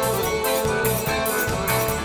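Live forró band playing a short instrumental bar between sung lines: a piano accordion holding steady notes over bass, guitar and drums keeping a steady beat.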